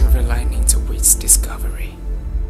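A whispered voice speaking one short line over background music with a deep, steady bass drone.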